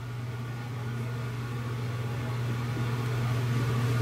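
Steady low hum with faint hiss, slowly growing louder.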